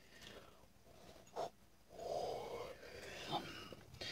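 A woman yawning: a quiet breathy intake, then a longer breathy exhale about two seconds in, with a few small mouth and breath sounds.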